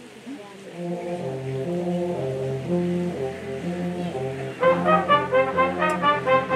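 Wind band starting a piece: a low, held phrase begins about a second in, and at about four and a half seconds the full band comes in louder with short, rhythmic chords.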